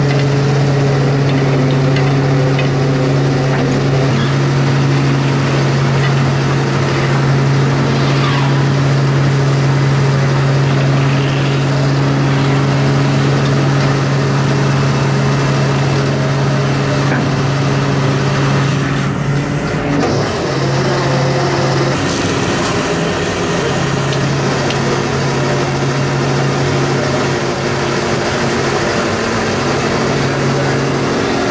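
Fishing trawler's diesel engine running with a steady low drone over a haze of wind and water noise. The drone drops out briefly about twenty seconds in.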